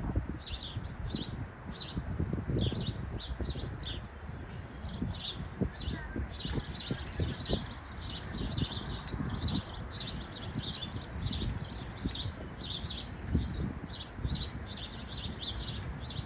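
Male house sparrow chirping over and over, a steady run of short chirps about two or three a second, over a low, uneven rumble.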